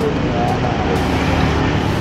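Street traffic noise, a steady rumble of vehicles, mixed with the low chatter of a crowd of people standing about.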